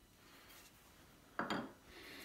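A small hand chisel set down on a wooden workbench: one sharp knock with a short ring about a second and a half in, after quiet room tone.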